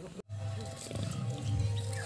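Pigs grunting in low, irregular pulses.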